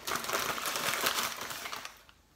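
A thin white bag or wrapper being scrunched up by hand, a dense crackling crinkle that dies away just before the end.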